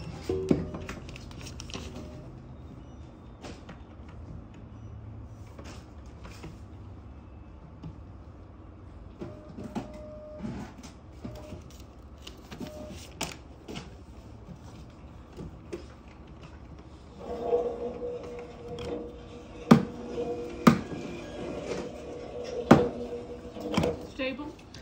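Scattered knocks and clicks of items being handled on a counter. About two-thirds of the way in a steady pitched hum joins them, and several sharp clacks stand out near the end.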